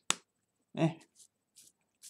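A sharp click just at the start, then a man's short "eh" about a second in.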